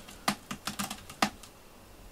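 A cat's claws scratching and catching on a carpeted cat tree as it reaches up to the top platform: a quick run of about seven scratchy clicks over the first second or so, then quiet.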